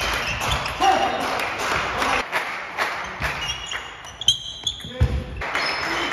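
Table tennis rally: the plastic ball clicking off the rubber bats and the table in quick succession, in a large sports hall, with background voices.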